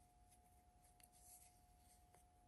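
Near silence: a faint steady tone with a few faint soft ticks from a crochet hook working cotton yarn.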